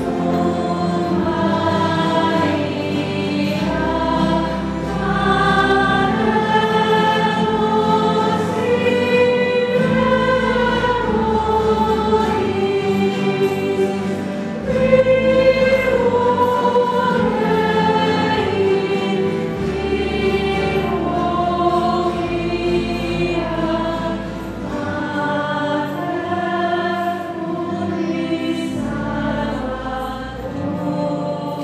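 A choir singing a slow church hymn during the offertory of a Catholic Mass, with long held notes and low sustained bass notes beneath.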